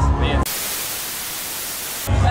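Steady hiss of static white noise that cuts in abruptly about half a second in, after the tail of a spoken remark, and stops just as suddenly at the end, at a blank edit gap in the video.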